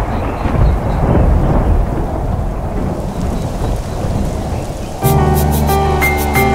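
Sound-effect thunder rumbling over the steady hiss of rain, the rumble slowly dying away. About five seconds in, a bright music track with a beat starts suddenly.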